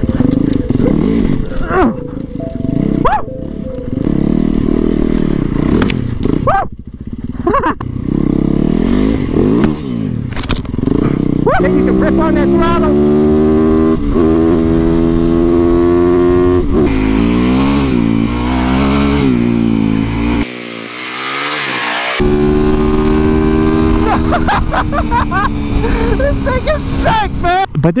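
Yamaha YZ450FX supermoto's 450cc single-cylinder four-stroke engine, first running rough and uneven over an off-road trail, then revving hard up through the gears on pavement, its pitch climbing and dropping back at each shift.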